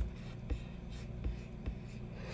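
Quiet room hum with a few faint, short clicks, about half a second, a second and a quarter, and near the end.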